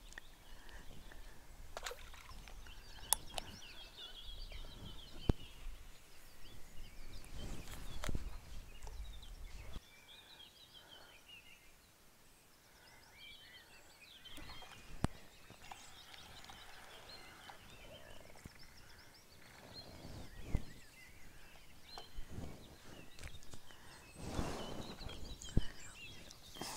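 Songbirds singing and calling, with wind rumbling on the microphone for about the first ten seconds, then stopping suddenly. A few sharp clicks and a short rustling near the end.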